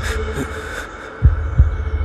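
Heartbeat sound effect over a low steady hum: one double thump, lub-dub, a little past halfway through, part of a beat that repeats slowly, about once every two seconds.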